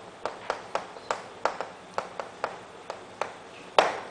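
Chalk striking and scraping on a chalkboard as words are written by hand: a run of short, sharp clicks, a few a second, with a louder click near the end.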